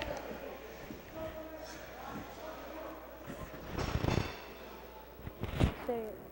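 Ice hockey rink ambience during a stoppage in play: faint distant voices echoing in the arena, with a cluster of knocks about four seconds in and a single sharper knock shortly before the end.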